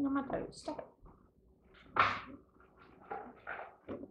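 Quiet speech and murmurs over light handling of small nails and wooden pieces on a tabletop, with one short, sharp sound about halfway through.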